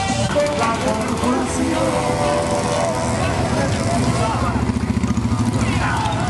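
Street noise of a motorcycle parade: a crowd of onlookers talking and calling out over running motorcycle and vehicle engines, with some music mixed in.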